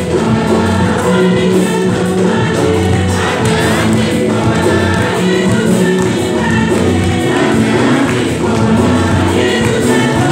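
Choir singing a communion hymn with many voices, sustained and steady, over a low held accompaniment.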